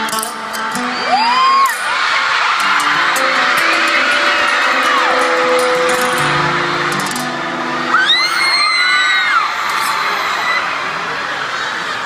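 Arena crowd of fans screaming and cheering, with high-pitched shrieks close to the phone about a second in and again around eight seconds, over soft music from the sound system.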